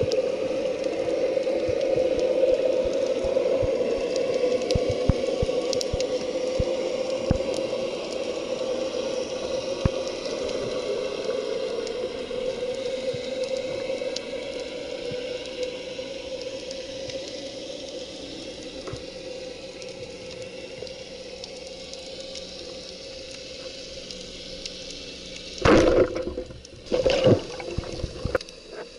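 Underwater noise picked up by a diver's camera: a steady rushing of water with scattered faint clicks, slowly fading, then two short loud bursts of water noise near the end.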